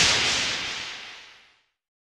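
Tail of a sound effect for a video logo card: a bright hissing burst dying away steadily, gone about a second and a half in.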